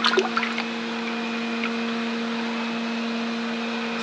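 Water splashing in a shallow tub for the first second as a hand lets go of a koi, then settling into steady water noise over a constant low hum.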